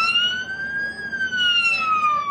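Emergency vehicle siren wailing over street noise, cutting in abruptly, climbing slightly for about a second and then slowly falling in pitch.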